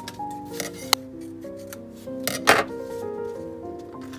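Scissors snipping through photo paper: a sharp click about a second in and a longer, louder cut around two and a half seconds in, over instrumental background music of held notes.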